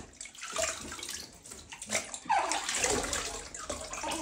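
Water splashing and sloshing in a plastic baby bathtub as a washcloth is dipped and squeezed in it, in uneven bursts, with a short voice-like sound about two seconds in.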